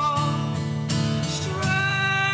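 A man singing, holding long notes, over his own strummed acoustic guitar.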